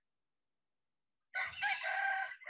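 Silence for over a second, then a rooster starts crowing, a loud, strained call that runs on past the end.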